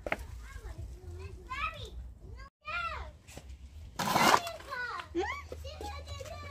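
Young children talking and chattering in high voices, with a loud, short burst of noise about four seconds in. The sound drops out completely for a moment midway.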